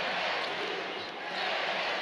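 Steady crowd noise in a basketball arena: a dense din of many voices with no single sound standing out.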